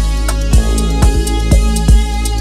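Electronic dance music: a steady kick drum and ticking hi-hats over a deep, sustained bass, with a pulsing synth pattern coming in about half a second in.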